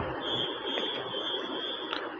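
Steady low hiss with a faint, thin, high-pitched tone held through most of it; no voice.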